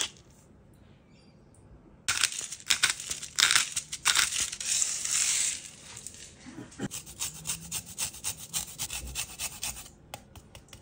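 A wooden hand spice grinder grinding over a bowl with a dense, gritty scratch. About six seconds in it gives way to a lime being scraped across a fine stainless-steel zester grater in quick, repeated rasping strokes.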